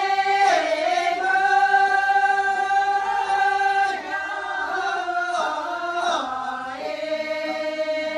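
A group of voices singing a Tibetan-style folk song together in long, drawn-out notes, the melody stepping to new pitches every second or two, with a dranyen lute being played along.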